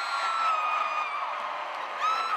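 A crowd of graduates cheering, with long, high-pitched screams and whoops held over the crowd noise.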